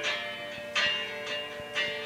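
Guitar strummed through a song, a new strum about twice a second with the chord ringing on between strums.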